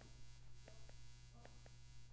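Near silence with a low steady hum, broken by a few faint ticks of a stylus tip tapping on a tablet's glass screen while writing.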